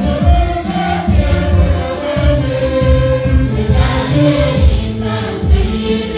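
Church congregation singing a gospel song together, with a steady low beat underneath.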